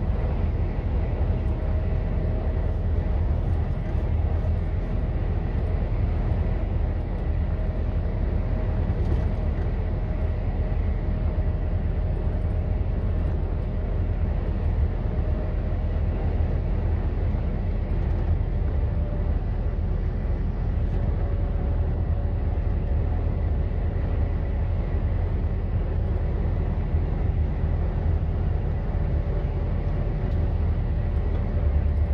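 Steady low drone of a lorry driving at road speed, its engine and tyre noise heard from inside the cab, with a faint thin whine above it.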